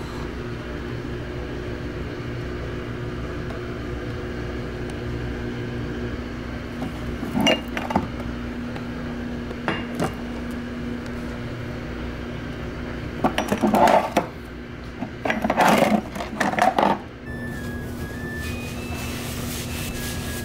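Glass and plastic condiment bottles and spice jars knocking and clinking as they are taken out of a cabinet and set down on a stone countertop: a few single clinks, then two louder clattering spells of about a second each.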